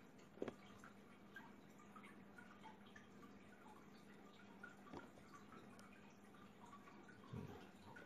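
Near silence: room tone with a faint steady low hum and a few faint clicks, two of them slightly stronger, about half a second in and about five seconds in.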